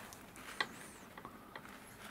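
A few faint clicks and small taps from handling the plated figure on its clip lead beside the plastic plating tank, the sharpest about half a second in.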